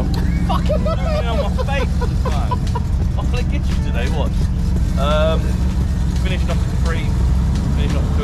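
A classic BMW saloon's engine idling steadily, with a low, even rumble. Faint voices come through over it.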